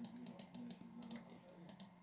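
A scattering of faint, light clicks and taps, irregularly spaced, over a faint steady low hum.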